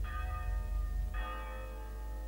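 A church bell tolling a funeral knell: two strokes about a second apart, each left ringing.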